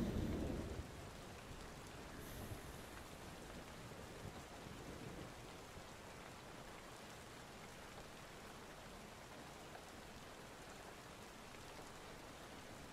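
Steady rain falling, heard as an even wash of noise, with a low thunder rumble dying away in the first second.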